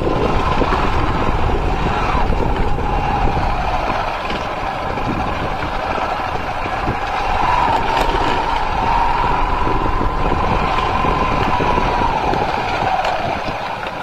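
Motorcycle running while riding along a rough dirt road, engine and road noise steady, with a faint wavering whine from about seven seconds in until about twelve.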